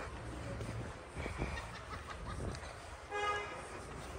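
A short horn toot with a steady pitch about three seconds in, over low outdoor bustle with scattered knocks.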